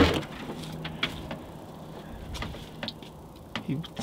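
Door of a 1966 Volkswagen Beetle being opened by hand: a sharp latch click at the start, then a few light clicks and knocks as it swings open.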